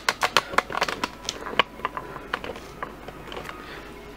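A rapid run of light clicks and taps, thickest in the first second or two, then sparser.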